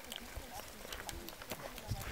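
A baboon grooming a man's hair at close range: faint, scattered soft clicks and smacks.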